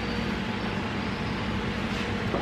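Steady background rumble and hiss with a faint low hum, even in level throughout.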